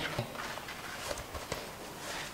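A few faint, soft taps over quiet room tone.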